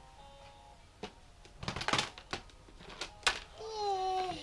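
Plastic clothespins and a plastic basket clattering as a baby handles them: a few sharp clicks and a quick rattle of knocks in the middle. Near the end the baby gives a short, high vocal sound that falls in pitch.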